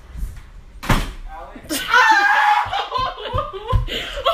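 A bedroom door swinging shut with a single thud about a second in, followed by a person's voice talking.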